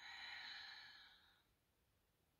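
A woman's long exhale through the mouth, a full breath out like a soft sigh, fading away after about a second and a half.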